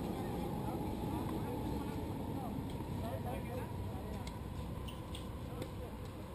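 Steady outdoor background rumble with faint, distant voices. A few faint short taps fall in the second half.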